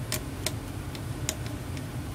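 A few faint, scattered metallic clicks and taps of small hex keys being handled and picked out of an SAE set, over a steady low hum.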